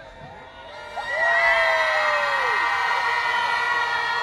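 Large outdoor crowd cheering. About a second in, long held whoops and whistles rise, with one drawn-out shout that slides down in pitch.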